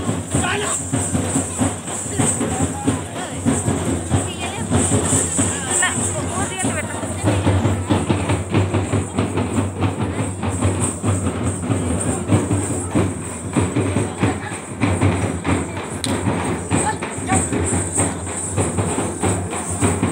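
Procession drumming: drums and jingling percussion beaten in a fast, continuous rhythm, with crowd voices and shouts mixed in.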